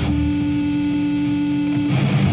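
Distorted electric guitar holding one steady note at the start of a heavy metal song from a demo recording; near the end the rest of the band comes in.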